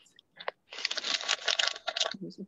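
Handling noise from a phone being moved and turned around: a click, then about a second of dense scraping and rustling with small clicks.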